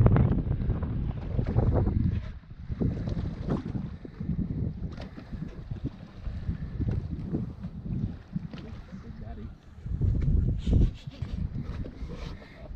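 Wind buffeting the microphone on an open boat: an uneven low rumble in gusts, strongest at the start and again about ten seconds in.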